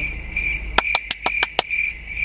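Cricket chirping: a high, steady pulsing trill, about three pulses a second. A quick run of about six sharp clicks comes in the middle.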